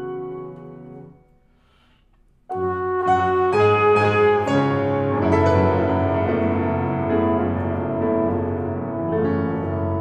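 Free jazz improvisation on trumpet and grand piano: a held note fades out in the first second, then after a short pause both come in loudly together at about two and a half seconds and go on in dense chords and runs.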